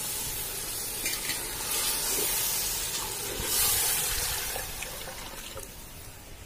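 Liquid added to hot mutton masala in a large aluminium pot, sizzling and bubbling in a steady hiss that swells in the middle and fades toward the end.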